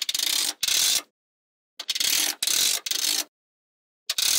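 A thin plastic card being slid between rows of small magnetic balls, the balls clicking against one another in rapid runs. There are two runs of about half a second each, a short pause, then three more back to back.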